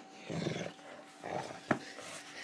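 Rhodesian ridgeback growling in rough play, two short growls, with one sharp knock near the end.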